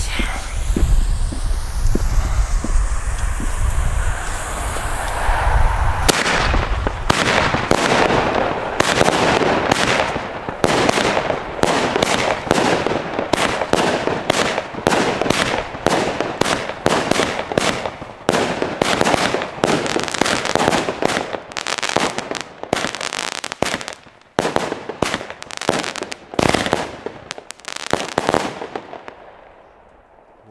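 Tropic Eagle 41 firework battery, a 25-shot cake, firing. The first shot comes about six seconds in, then shots follow at roughly one a second, each launch bang joined by the burst of a coloured star shell overhead. The volley stops just before the end.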